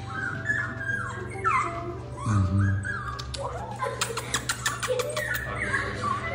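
Young Cavapoo puppy whimpering in short, high-pitched cries that slide down in pitch: a nervous puppy. A quick run of sharp clicks comes about two thirds of the way through.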